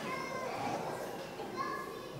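Faint children's voices and chatter, several talking at once at a distance, with the murmur of a large room.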